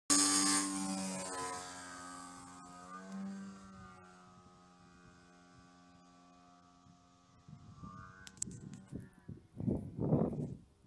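DA100 twin-cylinder two-stroke petrol engine with canister exhaust and propeller on a 2.6 m 3DHS 330 RC aerobatic plane in flight, holding a steady pitch. It is loud at first and fades over a few seconds as the plane flies away, with a brief swell about three seconds in. Irregular rough rumbles come in near the end.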